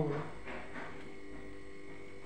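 Steady electrical hum with a faint high whine held at one pitch, as from an appliance or small motor running in the room.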